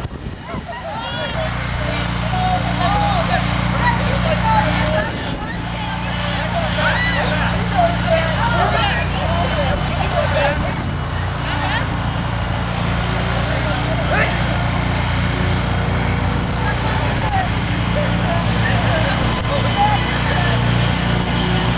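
Small lawnmower engine running with a steady low hum that settles in about a second and a half in. People's voices call out over it throughout.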